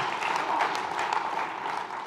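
Congregation applauding in a large hall, a dense patter of many hands clapping that eases off slightly toward the end.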